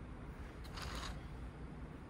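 Fingers pressing and rubbing against the wall of a coil-built clay pot as it is stretched outward: a faint, brief rub about a second in, over low steady room noise.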